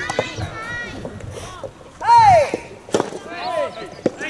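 Players shouting calls on an outdoor soft tennis court, with one loud drawn-out cry rising and falling in pitch about two seconds in and shorter calls around it. A single sharp knock sounds just before three seconds.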